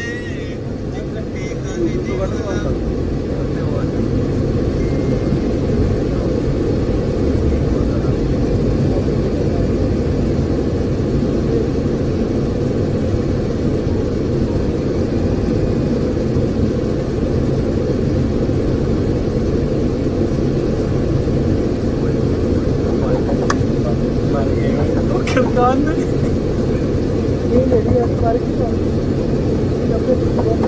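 Steady low rumble of vehicle traffic, with indistinct voices.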